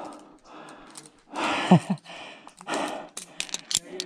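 A climber breathing hard, with a short grunt partway through, then a quick run of sharp metallic clicks near the end as the quickdraw's aluminium carabiners clink against the bolt hanger.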